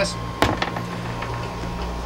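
A steady low hum, with a single sharp click about half a second in.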